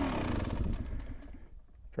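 Dirt bike engine running at a steady pace with ride noise, fading away over the first second and a half until it is almost gone.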